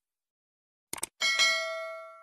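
Subscribe-animation sound effect: two quick mouse clicks about a second in, followed by a bright notification-bell ding that rings on and fades away.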